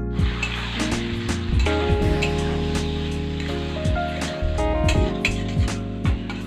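Instrumental background music, with oil sizzling under it as chicken gizzards and liver fry in masala in a steel kadai.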